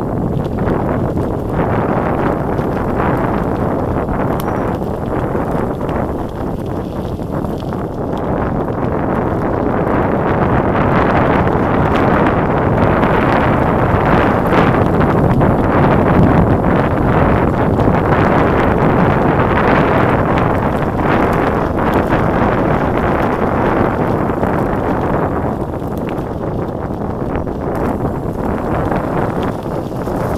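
Wind rushing over the microphone of a riding mountain biker's camera, with a continual clatter and rattle from the mountain bike rolling fast over a rough dirt trail.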